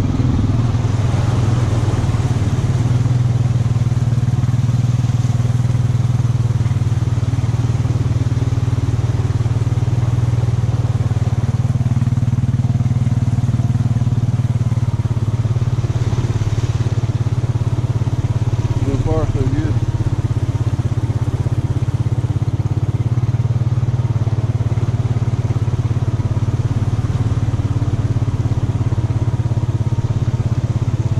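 ATV engine running steadily at low speed as the quad wades through deep water, with water sloshing and splashing around it.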